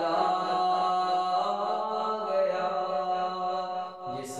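A man singing an Urdu devotional kalaam in a slow, drawn-out melody, holding long notes; the line tails off just before the end.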